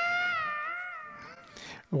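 A single electric guitar note held with a slow, wide vibrato, its pitch wavering up and down as it fades out over about a second and a half.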